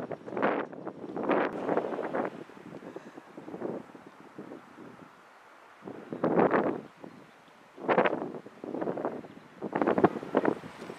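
Wind buffeting the camera microphone in irregular gusts, with brief lulls in the middle.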